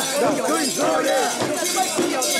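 Many mikoshi bearers shouting together in chorus as they carry the portable shrine, with its metal fittings and ornaments jingling and clinking as it sways.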